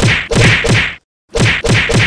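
A rapid series of punchy whack sound effects, about four a second, with a short break about a second in.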